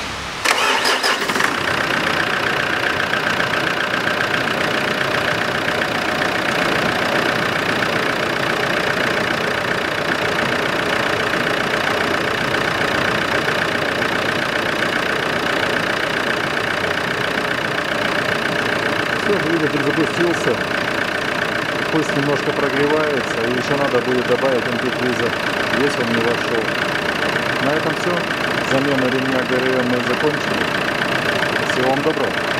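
Ford Ranger 2.5-litre four-cylinder turbodiesel starting abruptly about half a second in, then idling steadily. It is the first start after a timing belt and roller replacement.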